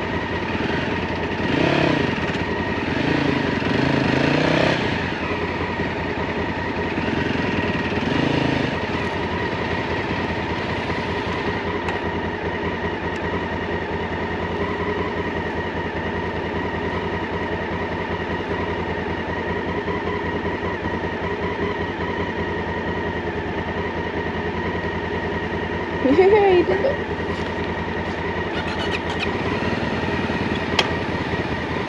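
Small dual-sport motorcycle engine idling steadily, with brief voices in the first nine seconds and a short, loud, wavering sound about 26 seconds in.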